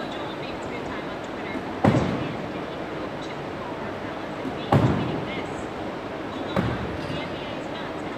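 Three sharp impacts of medicine balls in an echoing gym, a few seconds apart, each ringing briefly off the walls, over steady gym room noise.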